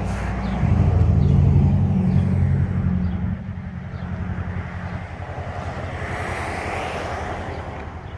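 Passing road traffic: a low vehicle rumble, loudest in the first three seconds, then a hiss of tyres that swells and fades about six to seven seconds in.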